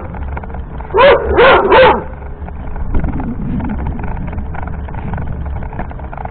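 A small dog barks three times in quick succession, a second or so in, over the steady low rumble of the wheelchair rolling on paving stones.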